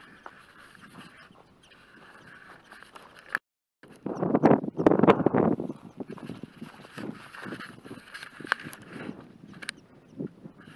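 Footsteps through dry prairie grass, with wind buffeting the microphone. The sound cuts to silence for a moment a little past three seconds in, then comes a loud gust of wind noise lasting about two seconds, before the footsteps go on.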